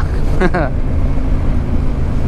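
Yamaha Ténéré 700 parallel-twin engine running at a steady cruise on a dirt track, heard from on board with steady wind and tyre noise.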